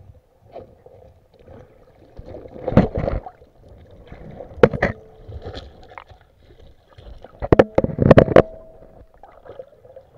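Muffled underwater knocks and clicks picked up by a submerged camera in a rocky stream, as a hand and stones move on the streambed. The sharp knocks come in clusters about three, five and eight seconds in, the cluster near eight seconds the loudest.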